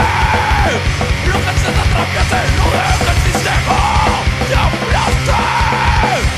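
Hardcore punk recording playing loud, with yelled vocals over dense, fast band backing.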